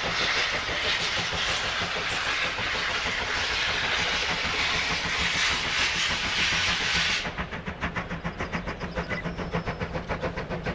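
Double-headed German steam locomotives (a class 35 and a class 50) letting off a loud, steady hiss of steam, which cuts off abruptly about seven seconds in. After that comes a quick, even beat of exhaust chuffs as the engines work the train.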